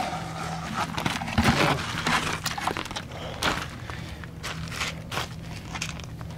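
Irregular scraping, crunching and knocking as wet refractory cement is scraped out of a bucket and packed by hand into a tire-rim mold, over a faint steady low hum.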